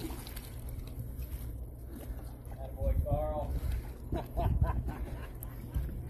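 Low rumble of wind on the microphone and water splashing against the side of a boat as a hooked shark thrashes at the surface, with short indistinct voices about halfway through.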